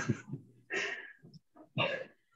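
A person's short, breathy laughs and murmured hesitation over a video-call connection: a few quiet bursts of breath, the clearest about a second in and another near the end.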